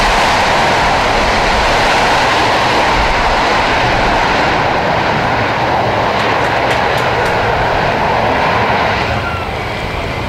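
Concorde's Rolls-Royce/Snecma Olympus 593 turbojet engines running, a loud, steady rush of jet noise that eases off slightly about nine seconds in.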